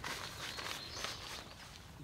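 Faint rustling and shuffling of a person crouching on grass and rolling up the tent's fabric door, fading off over the two seconds.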